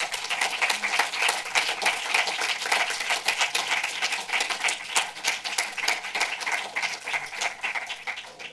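Audience applauding, many hands clapping in a dense patter that dies away near the end.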